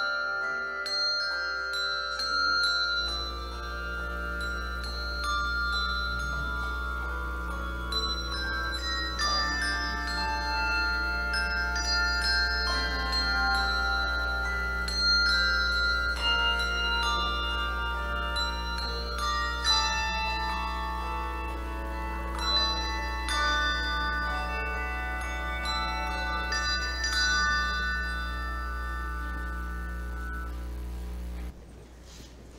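Handbell choir ringing a Christmas tune, many bells' notes overlapping and ringing on.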